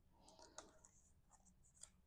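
Near silence: faint rustle and a few light ticks of small cardstock pieces being handled on a table.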